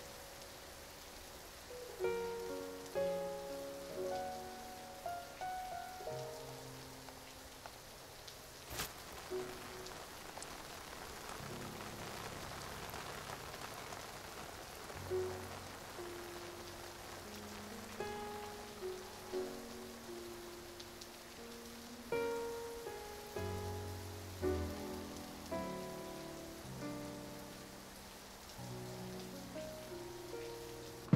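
Steady heavy rain falling on pavement, with a slow melody of separate, fading notes playing over it. A single sharp click stands out about nine seconds in.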